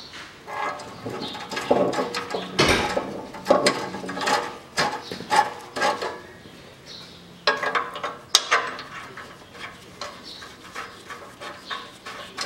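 Irregular metallic clicks and clinks as nuts are run onto the studs of the exhaust front-pipe flange under a Toyota Harrier, refitting the exhaust pipe.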